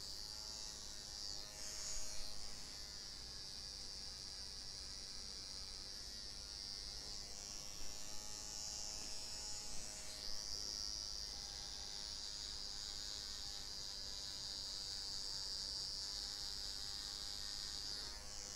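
Electric hair trimmer running with a steady high-pitched buzz as it marks a line into short hair, its pitch wavering briefly a couple of times.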